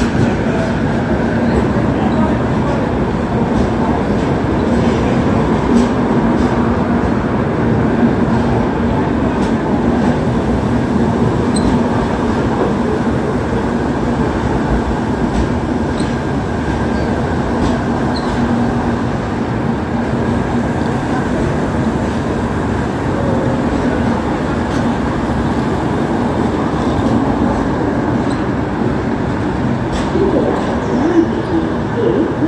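Shatabdi Express passenger coaches rolling past along a station platform as the train arrives: a steady rumble of wheels on the rails with a low hum under it and occasional clicks.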